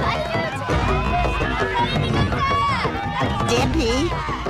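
Cartoon soundtrack: voices calling and gliding in pitch over background music, with a low rumble under them from about a second in.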